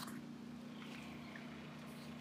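A generator running steadily, heard as a faint low hum.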